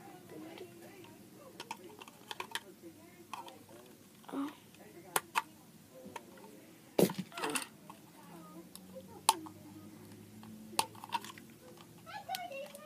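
Small plastic clicks and taps from fingers prying at the hinged back doors of a plastic toy truck, which are stiff and hard to open, with a louder knock about seven seconds in.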